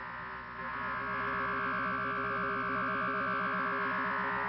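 Eerie electronic sound effect: a steady cluster of high synthesized tones over lower tones that warble rapidly up and down. It swells slightly about half a second in.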